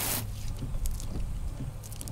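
Valeo 600 series wiper blades sweeping across a windshield wet with sprayed water. The water hisses, with a low steady hum underneath and a few faint clicks.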